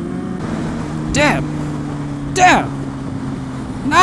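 Kawasaki ZX-6R 636 motorcycle engine running at a steady cruise, with wind noise on the helmet microphone. Two short vocal sounds cut in, about one second and two and a half seconds in, the second the loudest.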